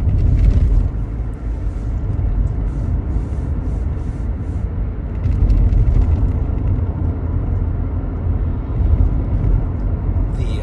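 Steady low rumble of road and engine noise inside a moving car's cabin, with a few faint rustles.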